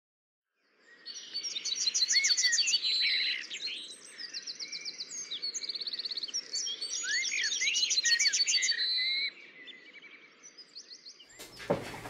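Birdsong: several birds chirping, with fast trills and short rising and falling whistles over a faint outdoor hiss. It starts about a second in and cuts off about nine seconds in.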